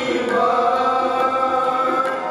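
Devotional chanting with musical accompaniment: long held sung notes.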